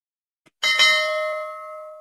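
Notification-bell sound effect: a soft click, then a single bell strike about half a second in that rings in several tones and fades away.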